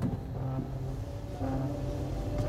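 Film-trailer sound design: low held musical notes over a deep, steady rumble.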